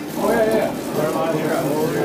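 Indistinct voices of people talking in a large room.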